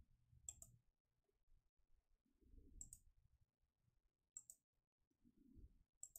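Three faint computer mouse clicks, a second or two apart, over near silence.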